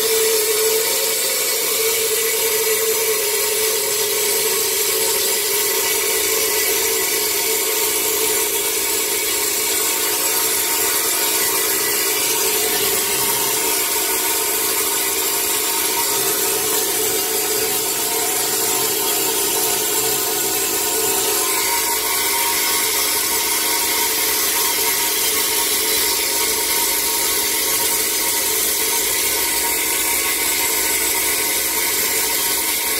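Homemade vapor blaster running continuously: compressed air driving a water-and-abrasive slurry from the nozzle against a metal part, a steady hiss with a hum underneath.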